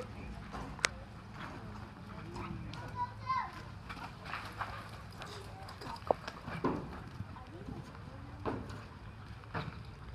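A horse galloping a barrel-racing pattern in a dirt arena, its hoofbeats coming as scattered knocks, with people talking nearby and a steady low hum underneath.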